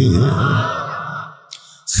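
A man's voice trailing off into a breathy exhale into a close microphone that fades away, followed near the end by a brief, sharp intake of breath just before he speaks again.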